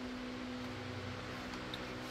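Honda Accord's electric fuel pump priming with the ignition key on: a steady low hum that stops shortly before the end, pressurising the fuel system ahead of a first start.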